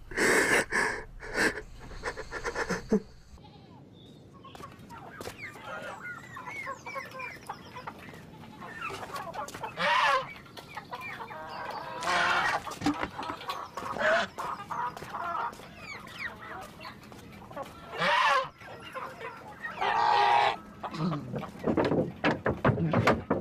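Farmyard animal sounds: chickens clucking, with several short louder calls from a goat or fowl spread through the scene.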